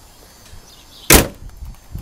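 A car hood slammed shut about a second in: one sharp, loud bang.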